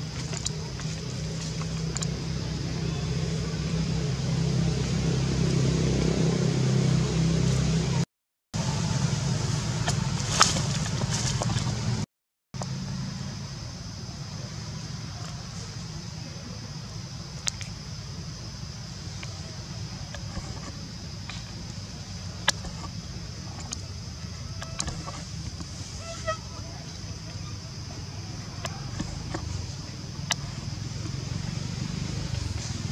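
Outdoor background noise: a steady low hum, louder in the first half, with a few sharp clicks. It cuts to silence twice for about half a second.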